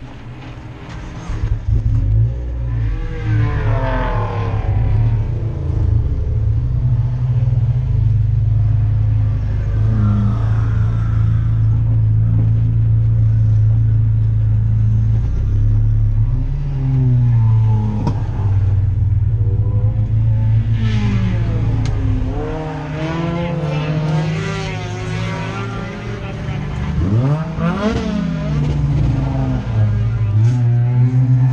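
Race car engine droning steadily, heard from inside the stripped cockpit. Other race cars' engines rise and fall in pitch as they rev and pass by several times, the loudest pass coming near the end.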